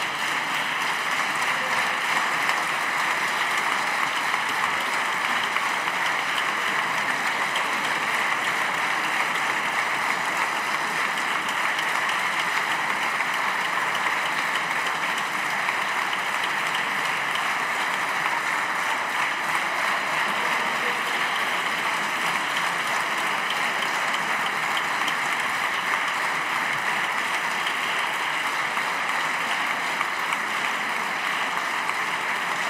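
Long, steady applause from a packed parliamentary chamber, many deputies clapping at once.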